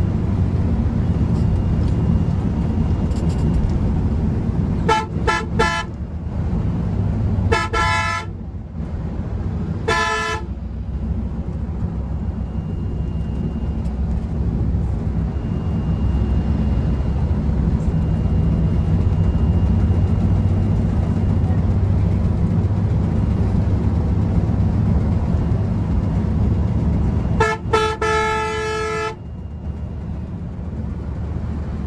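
Engine and road noise of a Volvo multi-axle coach at highway speed, heard from inside the cab, with the horn sounding: several short toots between about five and ten seconds in and a longer blast near the end.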